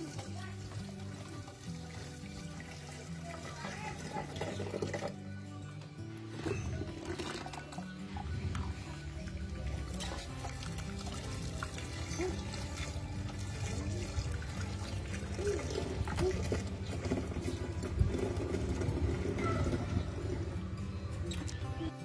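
Thick green leaf slurry poured from a plastic bucket into a plastic jerrycan, under background music with steady held notes.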